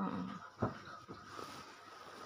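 A child's brief whimper, then a single click about half a second in, followed by faint rustling.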